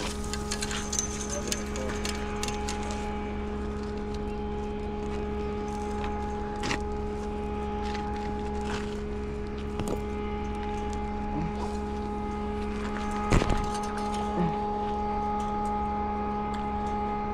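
A steady hum holding several constant pitches over a low rumble, with a few short knocks, the loudest near the end.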